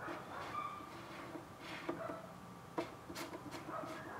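A few faint, sharp clicks from the hot plate's thermostat control knob being turned by hand, over quiet room noise.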